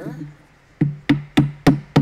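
Small steel-headed hammer tapping a wooden dowel rod into a hole in the boat frame's strip, on a wooden block: a run of quick, even taps about three and a half a second, starting about a second in.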